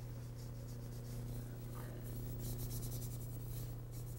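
A paintbrush scrubbing a thin gray oil-paint wash onto a reproduction whitetail antler, with a run of quick scratchy strokes in the second half, over a steady low hum.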